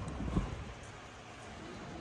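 Soft footsteps on wooden boardwalk planks against quiet outdoor ambience, a few low knocks with the clearest just under half a second in.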